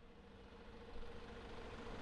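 City street ambience fading in: a steady rumble of traffic with a faint steady hum, growing louder about a second in.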